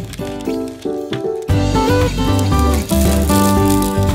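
Background music with no speech. About a second and a half in, a bass line comes in and the music gets louder and fuller.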